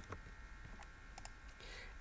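A few faint computer keyboard key clicks, the sharpest right at the start, with a low steady hum under them.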